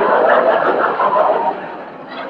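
Studio audience laughing at a punchline, the laughter dying away about a second and a half in, on a narrow-band old radio recording.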